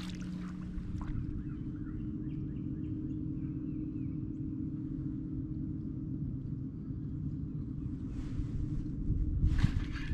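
Outdoor ambience on a lake: a steady low hum with wind rumbling on the microphone, and faint bird chirps in the first half. A couple of brief swishes near the end.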